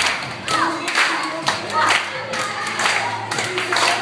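A group of people clapping along in a steady rhythm to an upbeat action song, with singing and music underneath.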